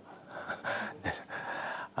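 A man sighing: two breathy exhales, each under a second long.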